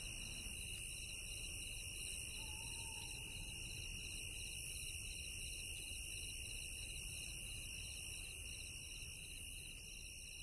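A steady chorus of insects trilling, several high continuous tones layered with a rapidly pulsing chirp. A faint short whistle comes about two and a half seconds in.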